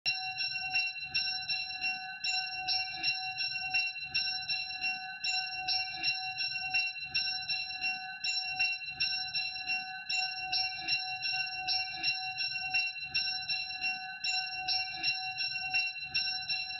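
Church bells ringing a continuous peal: several bells of different pitch struck in quick succession, about three strikes a second, each note ringing on under the next.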